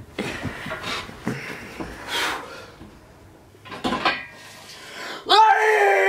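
Soft scattered rustling, then about five seconds in a person's voice holding one long, loud note.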